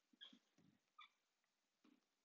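Near silence, broken by a few faint, short sounds: a brief high-pitched squeak about a quarter second in, another about a second in, and a few soft low knocks.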